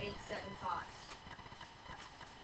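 Faint, indistinct voices in a classroom, with a few light clicks or taps.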